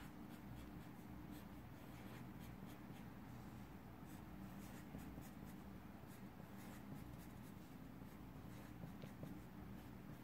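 Marker pen drawing and hatching small circles on paper: faint, quick scratching strokes, over a low steady hum of room tone.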